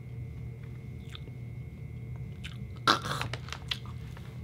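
A person chewing a mouthful of crunchy snack: a few faint crunches, then a run of louder crunches about three seconds in.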